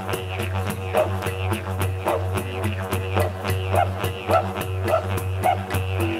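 Didgeridoo music: a steady low drone whose overtones sweep in a repeating rhythm about every half second, with sharp rhythmic clicks over it.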